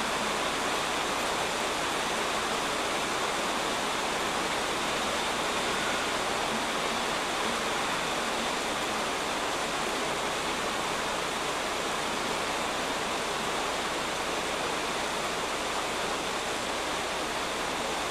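Steady rain, an even hiss with no breaks or changes.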